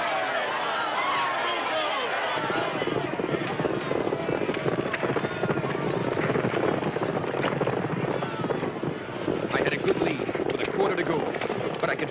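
A racetrack crowd cheering and shouting, giving way about two seconds in to the fast, even drumming of racehorses' hooves galloping on a dirt track, with crowd voices rising again near the end.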